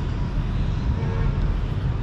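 Steady low outdoor rumble of urban background noise, with a faint brief hum about a second in.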